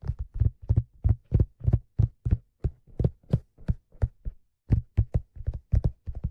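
Fingertips tapping on a black leather fedora: a steady run of dull, low taps, about three a second.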